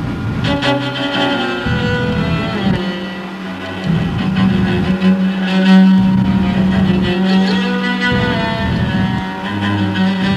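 Solo cello with its strings deliberately de-tuned, bowed in long sustained notes that change every second or so. A low note is held for several seconds in the middle, the loudest part.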